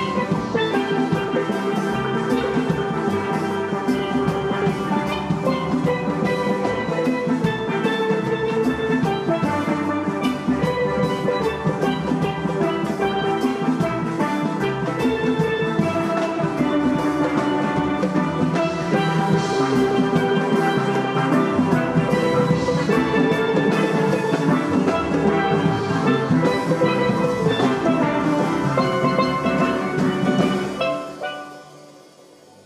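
A steel orchestra playing: many steel pans ringing out a busy melody and chords together, driven by a drum kit with cymbals.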